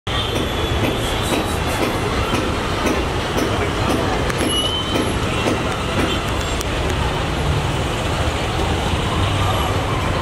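Steady street traffic noise with people talking nearby.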